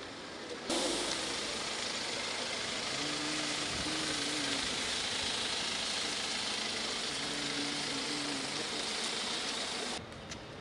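Vehicle engine idling under a steady hiss. It starts abruptly just under a second in, and faint low hums come and go twice.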